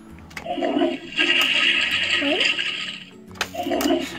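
Toilet Trouble game's toy toilet: clicks of its flush handle being pressed and its electronic flushing sound effect, a noisy rushing that runs for about two seconds.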